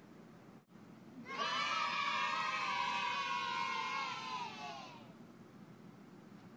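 A group of children shouting together, many high voices at once. It starts about a second in, lasts about four seconds and trails off near the end, dropping slightly in pitch.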